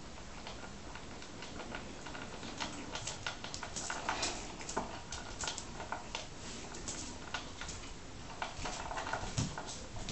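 Domestic cat eating dry cat biscuits from a plastic bowl: irregular crunching and small clicks, bunched a few seconds in and again near the end.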